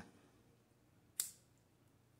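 A single short, sharp click a little over a second in: a lighter being struck to light a cigarette. Otherwise near silence.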